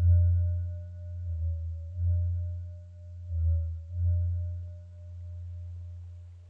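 Ambient background music: a deep droning tone that swells and fades every second or two, under a steadier, fainter higher tone. It fades away near the end.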